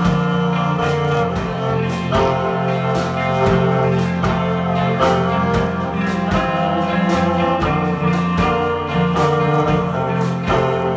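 Live band playing an instrumental passage: bowed violin and guitar over sustained low notes, with regular drum hits.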